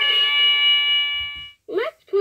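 Telly the Teaching Time Clock toy's speaker sounding one steady electronic tone, held for about a second and a half and then fading, before its recorded voice resumes near the end.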